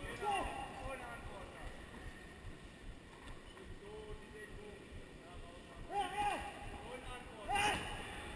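Indistinct shouted voices in a large hall over a faint background of hall noise, with louder calls about six seconds in and again near the end.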